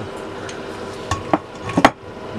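Small metal clicks from handling a spring-loaded valve spring tool: a few sharp clicks in the second half, the last the loudest.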